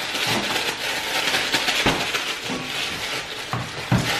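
Kitchen handling noise from baking gear being moved about: a steady rustle and clatter, with two sharp knocks, one about halfway through and a louder one near the end.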